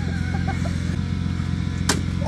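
A car engine idling steadily, with a single sharp click near the end.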